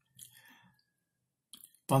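A quiet pause with a few faint clicks, then a man's voice starts up near the end.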